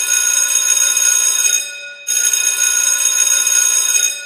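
A bell ringing as a sound effect, like an alarm clock or school bell: two rings of about two seconds each, the second starting about two seconds in.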